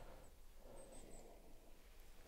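Near silence: quiet outdoor room tone, with a faint, thin high chirp about a second in.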